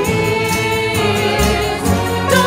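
Choir of young girls' voices singing sustained notes, accompanied by a chamber ensemble of clarinet, strings and piano.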